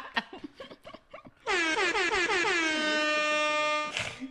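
An air-horn sound effect is played in: one long blast starting about a second and a half in. It wavers in quick pulses at first, then holds a steady tone, and it cuts off just before the end.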